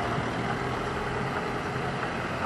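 Car engines running at low revs as cars towing caravans roll slowly past, a steady low hum.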